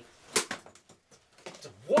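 A sharp knock about a third of a second in, with a lighter click just after and a few faint ticks later, as a small sheet-metal data transfer switch box is handled on a carpet.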